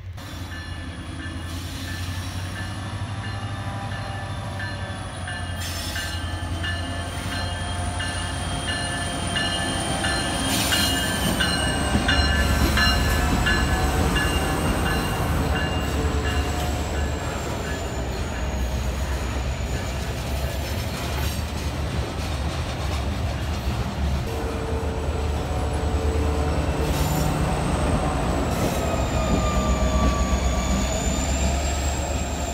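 A string of freight hopper cars rolling slowly past on a switching move, with wheels squealing on the rail in several high, slowly wavering tones over a steady low rumble and a few clicks. The sound grows louder as the BNSF locomotive shoving the cars draws near toward the end.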